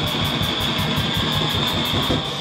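Hardcore punk band playing live and loud: electric guitar and bass over fast drumming, with rapid, evenly spaced cymbal strokes.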